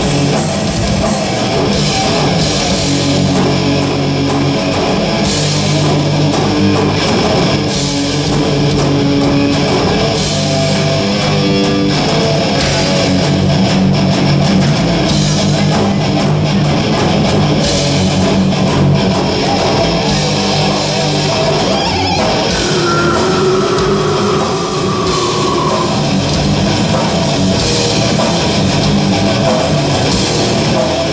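Live heavy metal band playing loudly and without a break: electric guitars over a drum kit.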